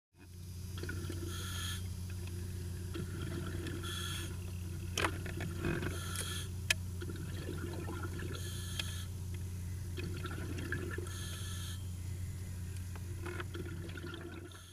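Underwater ambience from a submerged camera: a steady low hum under faint watery noise, with short rushing bursts about every two seconds and a couple of sharp clicks about five and seven seconds in. It fades in at the start and fades out near the end.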